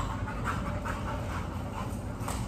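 A young German Shorthaired Pointer panting in quick, even breaths.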